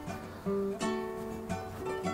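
Background music of plucked strings, with new notes struck about half a second in and again just before the one-second mark.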